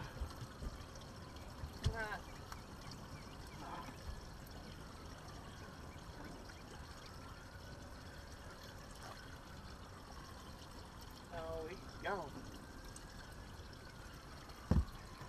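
Water trickling and pouring steadily, at a moderate level, with a few short pitched voice-like sounds about two seconds in and again near the end.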